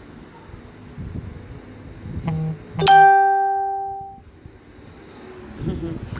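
A two-note chime: a short note about two seconds in, then a louder note that rings out and fades over about a second and a half.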